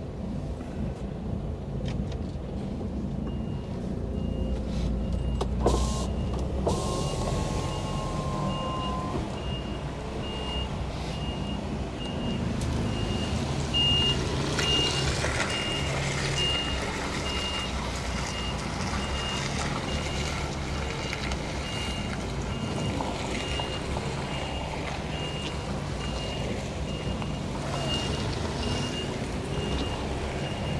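Diesel engine of a Mercedes Actros lorry running at low speed while a reversing alarm beeps steadily at one pitch, about two beeps a second, starting a few seconds in. A brief hiss comes about five to six seconds in.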